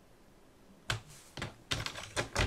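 A few short, sharp clicks from a sliding paper trimmer's plastic cutting head and rail as it is handled to make a cut, starting about a second in after a very quiet moment.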